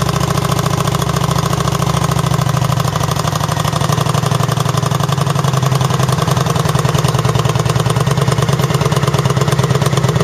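2009 Kawasaki Vulcan 900 Custom's V-twin engine idling through its stage 1 modified stock exhaust (cover off, end pipe cut off, holes drilled in the baffle caps), a steady rapid pulsing that reads about 92 dB on a sound meter. It idles down partway through.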